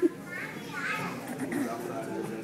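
A group of young children chattering and calling out at once, a babble of high voices echoing in a large gym.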